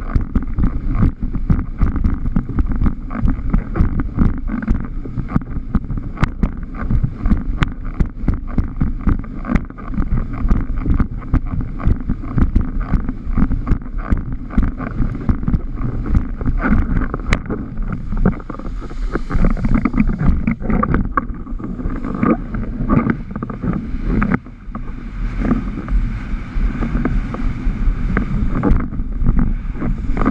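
Wind buffeting the microphone of a rig-mounted action camera while a windsurf board planes over chop, a steady rumble of wind and rushing water crowded with quick, irregular knocks and slaps.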